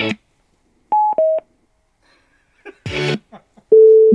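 Olight Olantern Music lantern's built-in Bluetooth speaker: the music cuts off, then two short electronic prompt beeps falling in pitch, a brief snatch of music near three seconds, and a louder falling two-tone beep near the end, the speaker signalling a mode change as it is set to True Wireless Stereo pairing.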